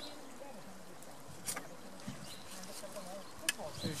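Faint background chatter of people talking outdoors, with two short sharp clicks, one about a second and a half in and one near the end. A nearby voice starts right at the end.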